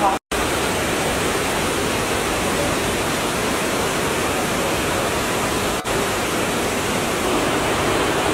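Steady rush of stream water tumbling over rocks, cut off for a split second just after the start.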